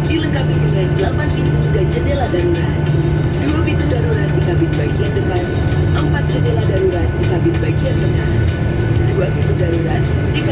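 Steady low cabin drone of a Boeing 737-800 waiting for takeoff. Over it, the Indonesian-dubbed safety video plays its music and narration.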